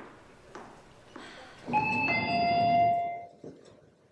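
Two-note doorbell chime, a higher note and then a lower one ("ding-dong"), about two seconds in, ringing for about a second and a half.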